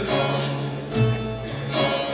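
Turkish folk music ensemble playing a short instrumental passage between sung lines, led by plucked strings: bağlama and kanun.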